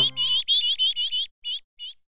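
A quick run of high bird chirps, coming fast at first and then spaced out into two last ones that stop just before the end, as the last held notes of a short jingle fade in the first half-second.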